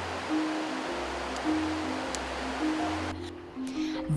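Background music of held, slowly changing notes over a bass line, with the even rush of a shallow stony stream underneath that stops about three seconds in.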